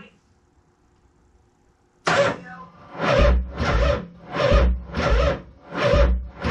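Harley-Davidson V-twin being cranked by its starter in an attempt to start it: after about two seconds of near silence, heavy chugs begin suddenly and repeat about one and a half times a second.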